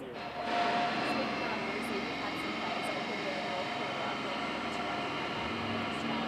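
An aircraft passing over: a steady engine noise that comes up within the first half second and stays loud.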